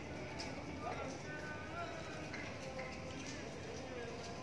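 Faint outdoor background: distant, indistinct voices over a low steady hum, with a few light taps or clicks.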